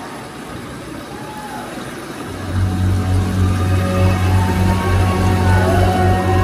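Live band in a large hall with the crowd's noise underneath. About two and a half seconds in, a deep sustained bass drone comes in and the level rises sharply as the next song's intro starts, with swooping higher tones above it.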